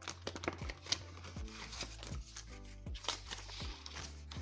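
Paper banknotes and a plastic binder pouch rustling and crinkling in many short crackles as bills are slid in and pulled out by hand, over steady background music.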